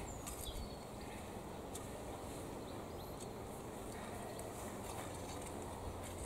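Faint scraping and scattered soft ticks of a long-handled hoe drawing soil up around potato plants to earth them up.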